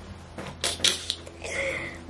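A few short rustles and clicks, clustered about half a second to a second in, from a fabric apron being handled as its strings are tied behind the back.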